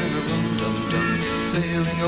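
A live band playing an instrumental passage of a folk-rock song, led by a strummed acoustic guitar with sustained chords from the other instruments.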